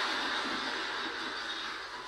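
Audience applause and laughter heard through a television's speaker, slowly dying down.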